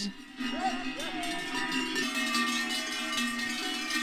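Many large cowbells on a herd of walking Abondance cows, ringing and clanging together in a dense, overlapping jangle.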